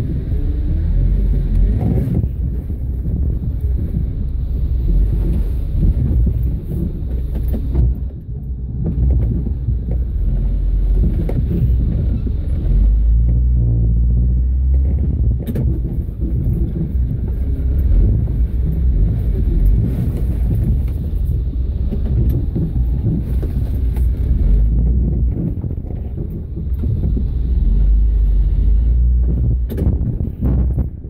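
Off-road vehicle's engine running under load and revving in spells, a loud low rumble that swells and eases. Near the end the vehicle makes little headway on the rock ledge, typical of being high-centered ('turtled') on the rocks.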